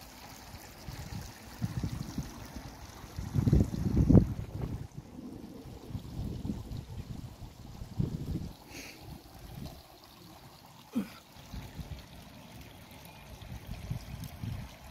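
Water trickling from a tiered garden fountain into a pond, under low, uneven buffeting on the microphone that is loudest about four seconds in.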